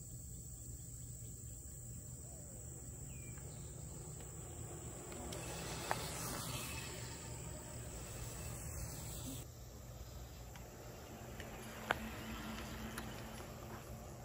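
Crickets trilling steadily, a constant high tone, over a low background hum. In the middle, a soft hiss swells and fades as a small e-bike rolls past close by, and two faint clicks are heard.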